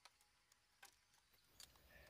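Near silence, with three faint, short ticks.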